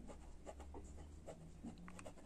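Faint scratching of a pen writing a word by hand on a workbook page, in a run of small irregular strokes.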